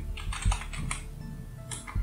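Typing on a computer keyboard: about six separate keystrokes, unevenly spaced.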